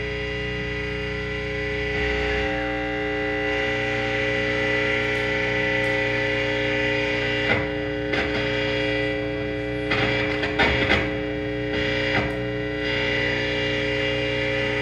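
Distorted electric guitars through effects pedals and amplifiers holding a steady, droning chord, with a few scraped or strummed strokes over it about halfway through and near the end.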